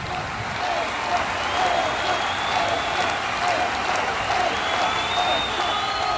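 A crowd clapping and cheering, voices calling out over steady applause.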